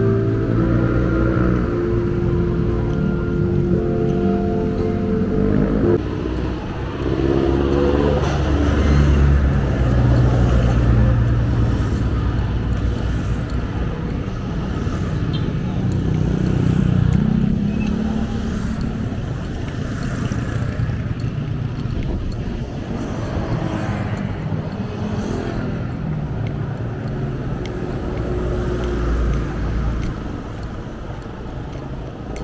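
Music plays for the first six seconds or so. It then gives way to roadside traffic: vehicles running past on the highway with a low engine and tyre rumble, loudest about eight to eleven seconds in.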